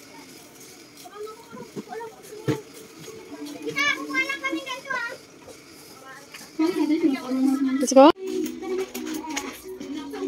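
Children's voices and chatter in the background, with a high-pitched child's voice about four seconds in and a louder voice that rises sharply and cuts off just after eight seconds.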